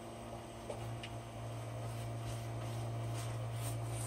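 Steady low hum, with a couple of faint ticks about a second in.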